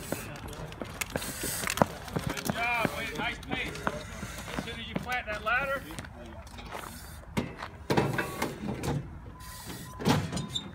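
Raised voices shouting in two short bursts, a few seconds in and again around the middle, over outdoor background noise with scattered knocks and clatter.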